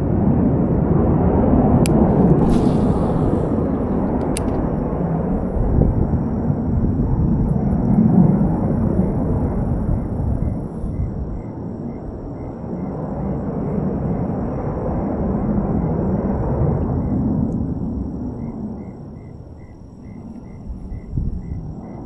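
Wind buffeting the microphone, a rough rumble that gusts louder and softer and dies down near the end. A faint, evenly repeating insect chirp comes in during the last few seconds.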